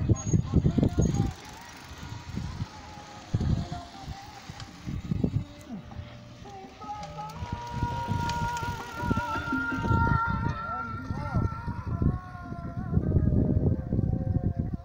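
Mountain bikes rolling down a loose dirt track, with low rumbling gusts buffeting the microphone in uneven bursts. From about halfway, a steady, wavering high squeal holds for several seconds.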